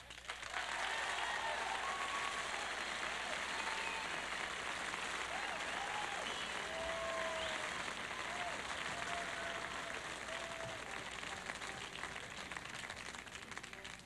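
A concert audience applauding steadily, with scattered cheers. It starts about half a second in and eases slightly near the end.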